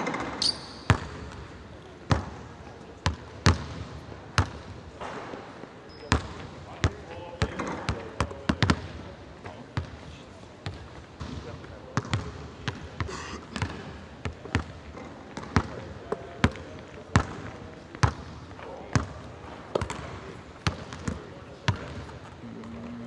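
Basketballs bouncing on a hardwood gym floor: sharp, unevenly spaced thuds, about two a second, with indistinct voices in the background.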